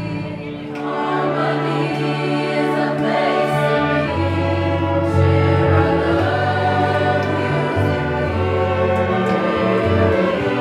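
Youth choir singing sustained chords with a student orchestra, the voices wavering over long, steady low notes.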